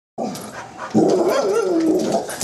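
A dog at a window giving a short vocal lead-in, then about a second in a loud, drawn-out, wavering bark-howl whose pitch slides down at the end. It sounds almost as if the dog is saying something.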